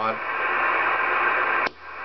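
Cobra 2000GTL CB radio's receiver hissing with steady static from its speaker, squelch open. Near the end the static cuts off suddenly with a click, then rises again as a front-panel knob is turned.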